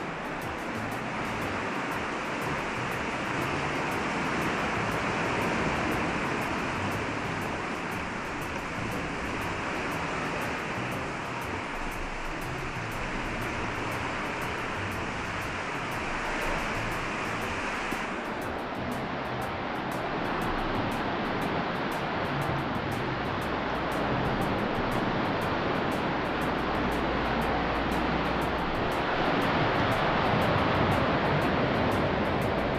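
Steady roar of sea waves surging and breaking inside a sea cave, echoing off the rock. The higher hiss dulls suddenly about eighteen seconds in.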